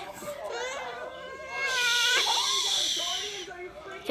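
A drowsy four-month-old baby fussing and crying in short wavering cries, with a louder, harsher cry from about two seconds in.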